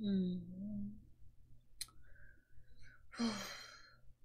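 A person's short hummed 'mm', a single sharp click about two seconds in, then a long breathy sigh near the end.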